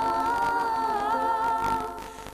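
A woman singing one long held note into a microphone, her pitch dipping slightly partway through, with musical backing underneath.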